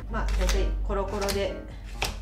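Kitchen knife chopping a peeled broccoli stem on a cutting board: a few sharp cuts, over a low hum and some pitched sound in the first second and a half.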